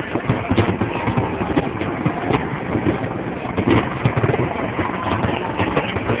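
Fireworks display: a dense, irregular run of pops and bangs from bursting shells, with faint crowd voices underneath.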